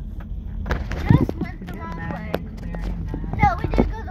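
Steady low road and engine rumble inside a moving car's cabin, with short snatches of voice and possibly music over it.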